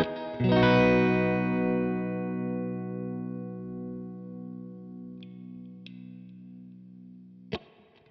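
Guild Surfliner offset electric guitar: a single chord struck about half a second in and left to ring, fading slowly over about seven seconds. A couple of faint high string touches come during the decay, and a short sharp note sounds near the end.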